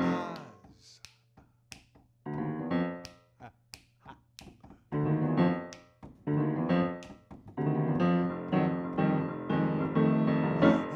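Upright piano playing a jazzy instrumental break in rhythmic chord bursts. Several sharp finger snaps cut through in the first half.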